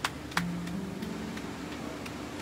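A few rhythmic hand claps, about three a second, stopping about half a second in, over soft low sustained notes from an instrument.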